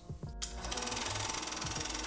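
Quiet background music for a section title: a fast, even, machine-like ticking texture that comes in about half a second in and holds steady.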